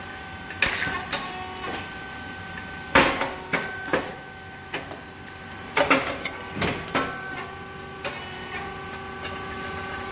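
A rice cake puffing machine running, with a steady motor hum under a handful of sharp pops as the heated mold opens and puffs out grain cakes. The loudest pops come about three and six seconds in.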